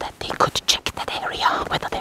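A person whispering close to the microphone in rapid, broken phrases.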